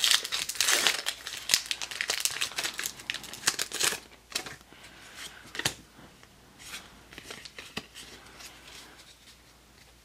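A foil Pokémon trading card booster pack wrapper being torn open and crinkled, in dense crackling for about four seconds. Then come sparser, fainter rustles and clicks as the cards are pulled out and handled.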